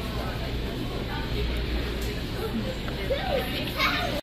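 Supermarket background: indistinct voices in brief snatches over a steady low hum.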